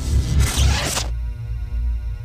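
Logo-sting music: a whoosh sound effect over a deep bass rumble, cutting off suddenly about a second in, followed by a held chord over the bass.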